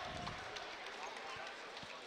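Faint murmur of an arena crowd in a basketball gym during a stoppage in play, with a few soft thumps scattered through it.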